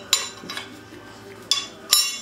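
LS engine rocker arm support rail being set onto the cylinder head: three sharp metal-on-metal clinks with a short ring, one near the start and two close together near the end.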